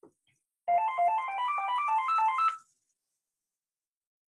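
Phone ringtone signalling an incoming call: a quick melodic run of short electronic notes that climbs in pitch for about two seconds, then stops.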